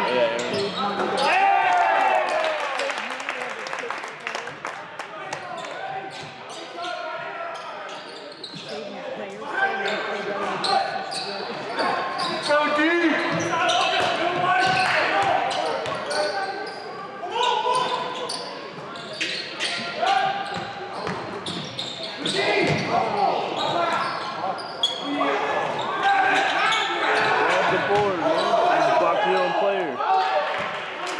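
A basketball bouncing repeatedly on a hardwood gym floor during live play, with players and spectators calling out.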